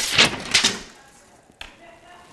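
Steel tape measure blade being drawn out and sliding against the wall in two scraping rushes during the first second, then a single sharp click.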